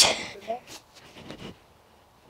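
Speech: a girl's spoken word at the start, then only faint, scattered low-level sounds.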